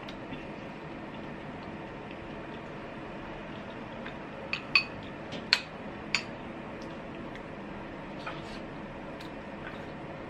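Porcelain soup spoon clinking against a glass bowl of ginger soup. There are a few sharp, ringing clinks around the middle, over a steady low room hum.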